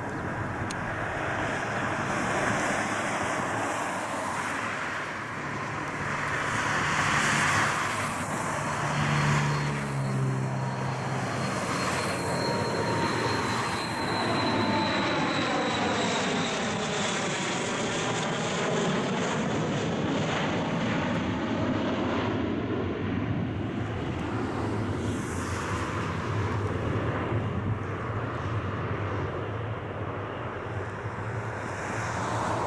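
Tupolev Tu-134A-3 jet airliner flying low over on landing approach, its two Soloviev D-30 turbofans giving a loud, steady jet roar. A high whine in it drops slowly in pitch as the aircraft passes over and moves away.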